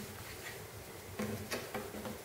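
Faint handling noise: a few small clicks from a quarter-inch jack cable being handled at the guitar.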